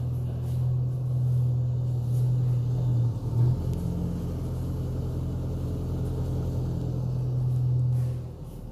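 Backhoe loader's diesel engine running, a steady low rumble that holds throughout, with a brief louder bump about three and a half seconds in.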